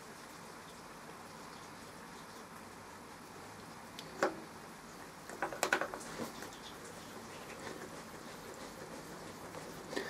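Quiet workshop room tone as a dividing head and its four-jaw chuck are turned by hand against a dial test indicator, with a single light metallic click about four seconds in and a short cluster of clicks and knocks a little later.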